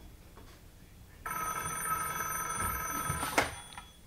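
Old-style telephone bell ringing once for about two seconds, then a short clack as the handset is lifted to answer.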